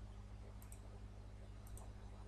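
Faint computer mouse clicks, two brief ones about a second apart, over a steady low electrical hum.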